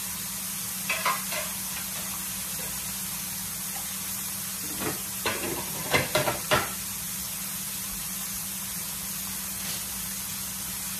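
Flour-battered pollock fillets frying in hot grease: a steady sizzle, with a few short knocks about a second in and a cluster of them between about five and seven seconds in.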